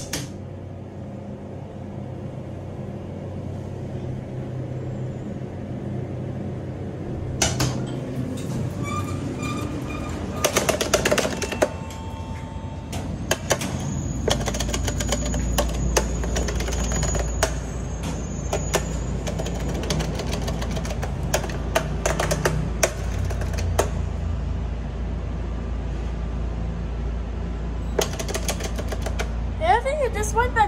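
Elevator car travelling with a low hum, a short run of repeated electronic beeps about eight seconds in, then clattering and knocking as the ride ends; from about halfway a steady low rumble of the open parking garage, with scattered clicks and knocks.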